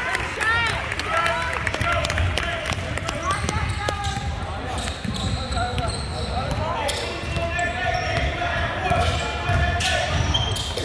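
A basketball dribbled on a hardwood gym floor during play, with voices of players and spectators calling out in the background.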